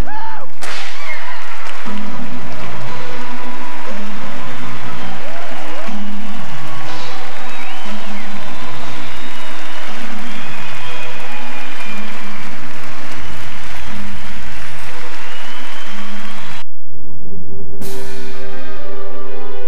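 Theatre audience applauding and cheering over loud music with a pulsing beat, opened by a single sharp crack about half a second in. The sound drops out about a second before the end, then a click.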